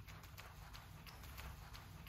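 Faint, irregular light taps or clicks, several a second, over a low steady hum.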